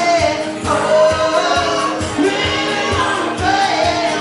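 A man singing live to his own strummed acoustic guitar. A steady strumming rhythm runs under a sung vocal line that bends up and down in pitch.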